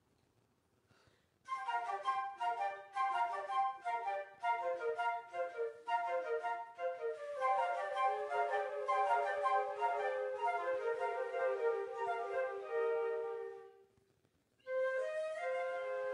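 A small flute ensemble playing a piece together. It begins about a second and a half in with quick, short detached notes, moves into longer held notes, breaks off briefly near the end, and starts up again.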